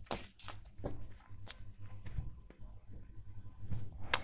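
A deck of tarot cards being shuffled and cut by hand, giving soft, scattered clicks and slides of cards against each other and the table.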